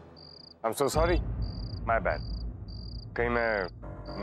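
A cricket chirping in a steady rhythm, one short high chirp about every two-thirds of a second.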